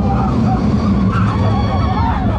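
Arrow steel roller coaster train running along the track: a loud, steady low rumble with high wavering squeals over it.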